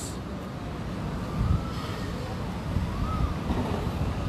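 Wind buffeting a phone's microphone: an uneven low rumble with a thin hiss above it.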